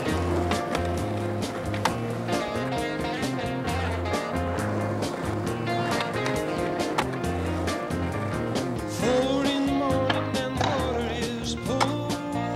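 Music soundtrack with a repeating bass line, mixed with skateboard sounds: urethane wheels rolling on pavement and the board clacking against the ground and a ledge during a trick.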